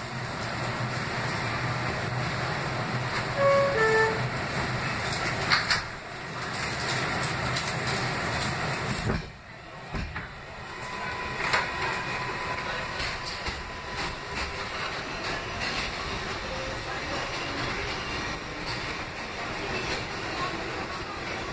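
Steady running noise of a Kawasaki R188 subway car heard from inside the car, with a short two-note chime about three and a half seconds in and a brief drop in the noise, then a thump, around nine seconds.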